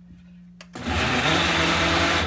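Ninja personal blender starting up about three-quarters of a second in and running at full speed, its motor whirring as it chops through a cup packed with fruit and liquid.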